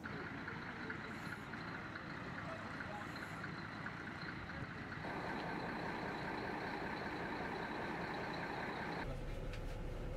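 Double-decker coach engine idling: a steady hum with a thin whine over it. About nine seconds in, the sound shifts abruptly to a lower, steadier hum, as heard from inside the coach.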